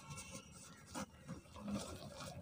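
Pure cement block crunching and crumbling as fingers break it apart, with dry powder rubbing and trickling; one sharper crack about a second in.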